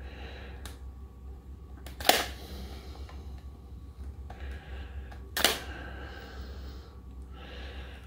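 Stanley knife blade clicking and scraping against the edge of a CD as it is worked in to split the layers, with two sharper clicks about two and five and a half seconds in and a few fainter ticks. A low steady hum lies underneath.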